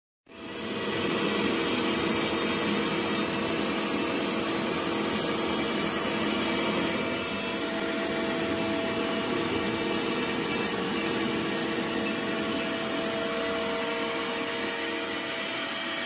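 Homebuilt CNC router milling aluminium plate: a steady spindle whine over the rush of its dust-extraction vacuum, cutting in abruptly at the start and dropping slightly in level about halfway through.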